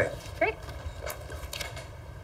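A few light clicks and handling noises from a folder and a phone being picked up, over a low steady room hum.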